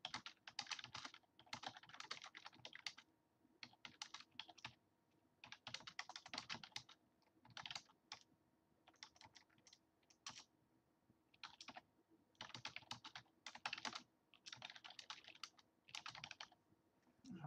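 Faint computer keyboard typing, keystrokes coming in runs of about a second with short pauses between, as a sentence is typed out.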